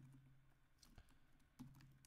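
Faint computer keyboard typing: a few scattered key clicks, otherwise near silence.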